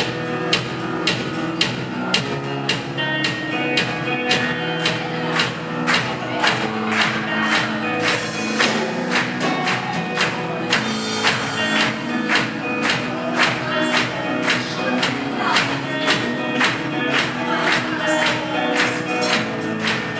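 A live band playing: a drum kit keeping a steady beat with electric guitars over it.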